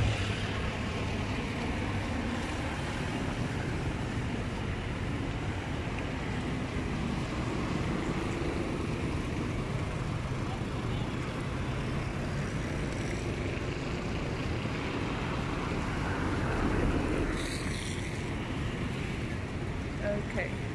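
Steady city street traffic: cars and a motorcycle passing on the road, a continuous engine and tyre noise with a slight swell near the end.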